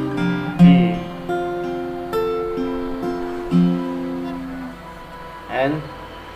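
Acoustic guitar with a capo, fingerpicked: single notes plucked one after another in an arpeggio pattern, each ringing and overlapping as it fades. The notes die away near the end, where a short spoken word comes in.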